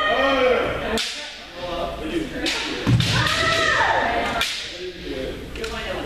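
Kendo practice: several sharp cracks of bamboo shinai striking armour, mixed with drawn-out kiai shouts from the practitioners, echoing around a large gymnasium.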